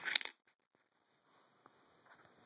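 Coins clinking against each other close to the microphone: a quick cluster of sharp metallic clicks right at the start, then one faint tick a little later.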